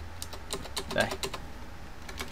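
Computer keyboard keys clicking in a quick run of several keystrokes, as text is entered into a text editor.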